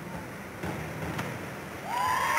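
Hushed ambience of an indoor diving-pool arena: a low, even wash of crowd and hall noise with a few faint knocks, growing louder just before the end.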